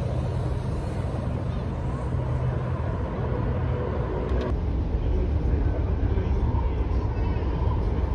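Road traffic by a busy city street, with a steady low engine hum. After a cut about halfway through, the low rumble of a train running, heard from inside the carriage.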